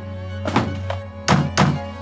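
Heavy thunks of an object slammed down on a desk, one about half a second in and two close together near the end, over background music of bowed strings.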